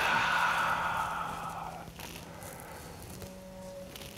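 A long audible breath out, a breathy hiss that fades away over about two seconds, then quiet room tone with a faint steady hum.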